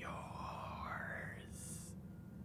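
A man whispering close into someone's ear, his breathy voice sliding upward in pitch and ending in a short hiss, over a steady low hum.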